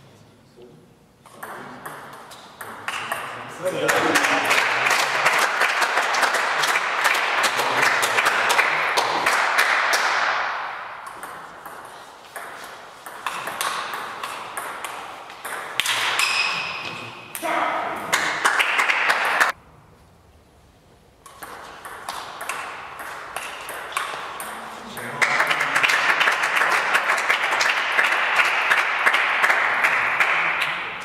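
Table tennis play: the ball clicking off bats and the table in rallies, with two long stretches of loud crowd shouting and cheering between points.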